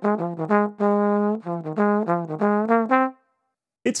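Solo Bach 36 tenor trombone playing a short jazz blues phrase plainly, without vibrato, scoops or grace notes. It is a string of quick, clean, separate notes with one longer held note near the middle, and it stops about three seconds in.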